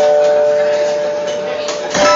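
Acoustic guitars letting a chord ring out and slowly fade, with a new chord struck right at the end.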